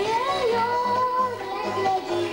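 A young girl singing a pop song into a microphone, amplified over accompaniment with a steady beat; her voice slides up near the start and then holds a long note.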